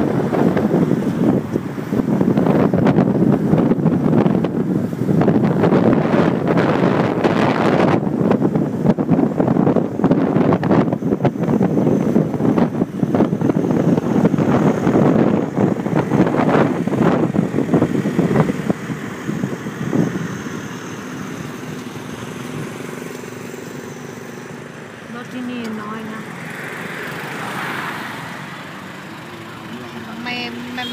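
Wind buffeting the microphone over a motorcycle's running noise, heard from the pillion seat of a moving motorcycle taxi. The rush drops off sharply about two-thirds of the way through as the bike slows, leaving quieter engine and traffic sound.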